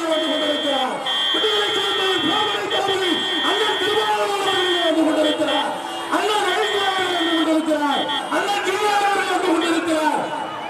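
A voice shouting continuously in long falling phrases, with a steady high-pitched whine above it that breaks off several times and stops near the end.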